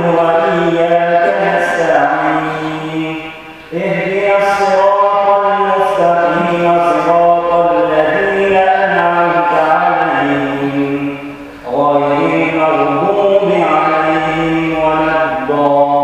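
A man reciting the Quran in the melodic qiroat style, drawing out long held notes in flowing phrases. There are short breath pauses about three and a half seconds and eleven and a half seconds in.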